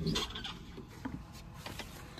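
A metal door latch on a plywood shed door being worked open with a clack right at the start, followed by a few light clicks and rustles of handling.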